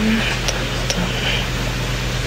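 A steady low hum with an even hiss of background machine noise, with two faint light clicks about half a second and a second in.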